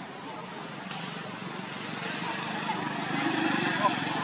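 A baby macaque's faint, wavering cries over the low running of a passing vehicle, which grows louder in the second half.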